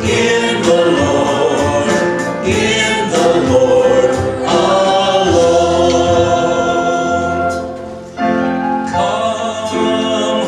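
Two men singing a gospel hymn into microphones, with keyboard accompaniment; the music dips briefly between phrases about eight seconds in.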